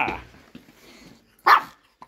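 A small dog barks once, a short, sharp bark about one and a half seconds in.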